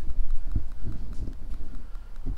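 Footsteps on a concrete garage floor: a series of dull, low thumps at about two a second, over a steady low hum.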